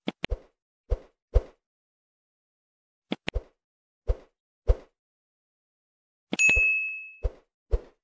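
Animated like-and-subscribe sound effects: a string of short, separate cursor-click pops, then a bright bell ding about six and a half seconds in that rings briefly and fades, with a few more clicks after it.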